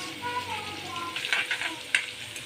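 Garlic frying in hot oil in a steel kadhai, sizzling steadily while a steel spoon stirs and scrapes the pan, with a couple of brief scrapes in the second half.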